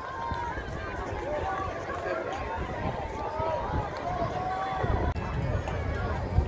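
Indistinct chatter of many voices talking at once, with a few low rumbles near the end.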